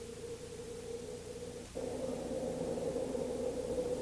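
Faint tail of orchestral background music: a soft held note carries on from the fading music, and another quiet sustained tone comes in a little under two seconds in, over a low hiss.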